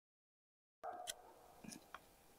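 Near silence, then a few faint short scrapes and clicks from a small knife blade prying pine resin out of a crack in pine bark.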